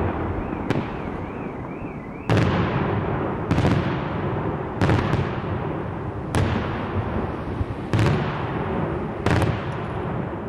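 Daylight fireworks shells bursting overhead, one sharp bang about every one and a half seconds, each trailing off in a rolling rumble.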